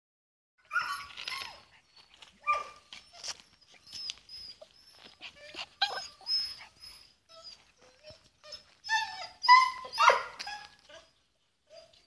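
Podenco puppy giving a string of short, high-pitched whines and yelps in bursts, loudest near the end.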